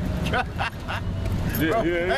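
Men talking outdoors over a steady low rumble of road traffic. The speech breaks into short fragments at first and turns continuous near the end.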